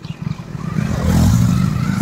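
Motorcycle engine running as the bike approaches, growing louder over the first second and then holding steady.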